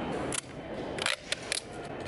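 A few short, sharp clicks, the loudest group a little after a second in, over a low steady background.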